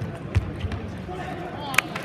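Table tennis ball being played in a match. Two soft knocks about a third and two-thirds of a second in, then sharp clicks near the end as the ball is struck and bounces on the table at the start of a fast rally, over a steady crowd murmur.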